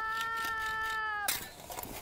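A man crying out in pain from a cut on a sickle: one long, high wail held for just over a second, then breaking off sharply.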